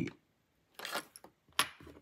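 A few faint, small metallic clicks and taps, the sharpest about one and a half seconds in: a small screwdriver working against the metal gauge housing while levering a gauge off the instrument cluster's circuit board.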